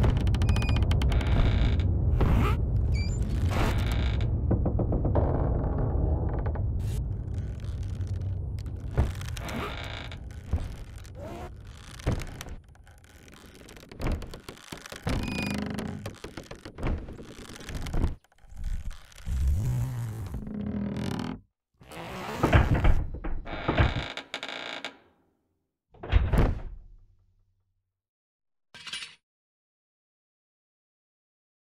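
Film sound-effects track for climbers on a ladder in blowing snow: a heavy low rumble with crackle that dies away over the first dozen seconds, then a string of separate thuds and knocks with gaps between them, ending in silence.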